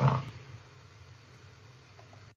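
The tail of a man's spoken word, then faint steady background hiss and hum from his microphone during a pause in speech.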